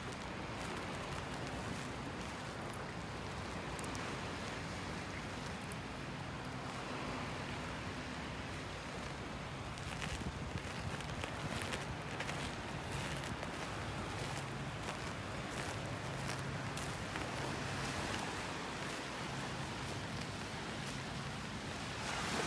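Footsteps crunching over a beach thickly strewn with small shells, over a steady hiss of wind on the microphone; the steps are clearer from about ten seconds in.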